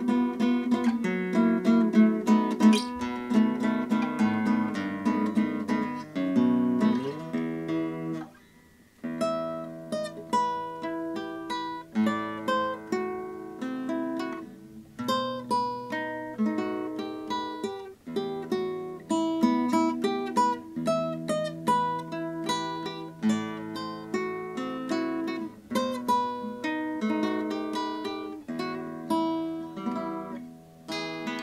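Yamaha GC22 nylon-string classical guitar played fingerstyle, plucked notes and chords ringing one after another, with a short break about eight seconds in before the playing resumes.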